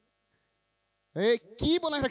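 Near silence for about a second, then a man's voice speaking into a microphone.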